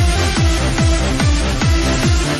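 Electronic dance music with a steady four-on-the-floor kick drum at about two beats a second, each kick a falling low thump, and a bass note between the kicks.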